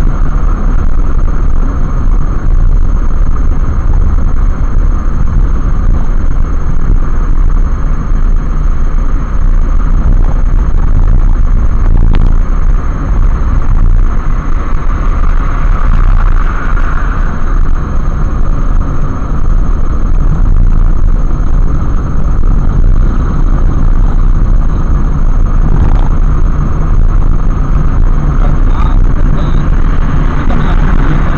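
Road and engine noise of a car driving at highway speed, recorded by a dashcam inside the car: a heavy, steady low rumble with a thin, steady high tone over it.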